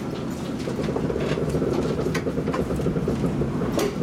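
Kintetsu limited express train heard from inside the passenger car while running: a steady low rumble with scattered sharp clicks from the wheels over the rails. The rumble grows louder about a second in.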